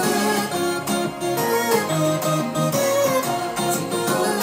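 Keyboard music: chords and melody notes played on an Akai MPK261 MIDI controller keyboard.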